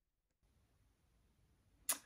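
Near silence: faint room hiss comes in shortly after the start, with a single short sharp click near the end.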